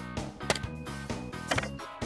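Background music, with two sharp clicks about half a second and a second and a half in from a nail gun being fired at a wooden table frame; it is not driving any nails.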